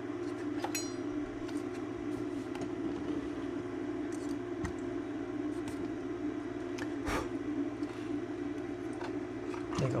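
Light clicks and knocks of a circuit board and a digital microscope being handled on a bench, over a steady low hum; one sharper knock comes about seven seconds in.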